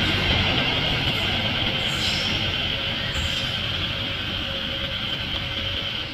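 Passenger train coaches rolling away along the track, the wheel-on-rail noise fading steadily as the train recedes.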